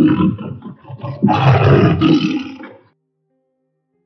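Tiger roaring twice: a short roar, then a longer one that starts just over a second later and dies away before the three-second mark.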